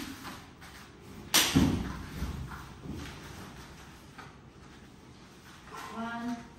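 One sharp, heavy thud on a foam floor mat about a second and a half in, as grappling wrestlers land or stamp on it, followed by a few weaker knocks and scuffles of bare feet.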